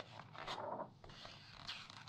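A glossy magazine page being handled and turned by hand: a small click at the start, then the paper sliding and swishing for about a second, with more rustling after.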